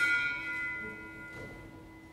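A bell struck once, its several tones ringing on and slowly dying away.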